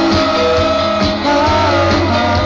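A live rock band playing through a concert sound system, heard from the audience: guitars and bass under long, slightly bending melody notes.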